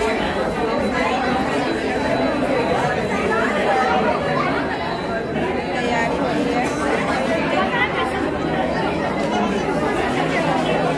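Crowd chatter: many children and adults talking over one another at a steady level in a busy room.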